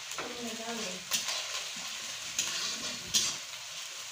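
Onions and spices sizzling in a black iron kadai while a metal spatula stirs and scrapes the pan. Sharp scrapes stand out about a second in, at about two and a half seconds, and at about three seconds.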